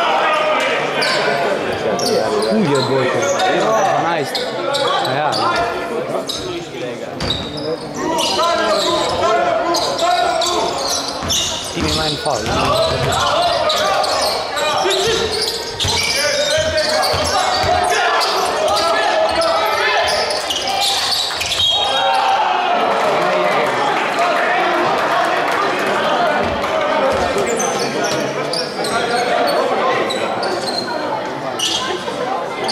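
Basketball game play in a gymnasium: the ball bouncing on the wooden floor among many short knocks, under steady talk and calls from players and spectators, all echoing in the hall.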